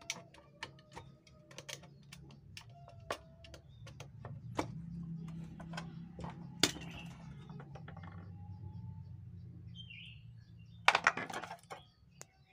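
Scattered light clicks and taps of a plastic portable-radio case and battery cover being handled and worked on, with a louder clatter about a second before the end.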